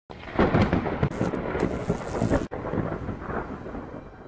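Thunder rumbling and crackling, loudest in the first half, with a sudden break about two and a half seconds in, then dying away.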